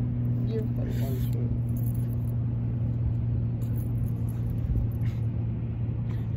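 Wind buffeting a phone's microphone over a steady low hum, with a few faint voices about half a second to a second and a half in.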